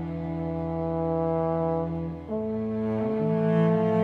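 French horn playing long held notes over a small ensemble of strings and woodwinds, in sustained chords that change to a new harmony a little past halfway.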